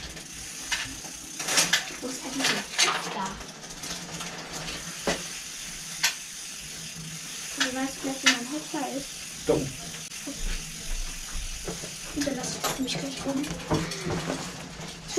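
Hand tools and metal bicycle parts clinking and clicking as a bicycle is worked on by hand: irregular sharp metallic taps every second or so, with a few low murmured words in between.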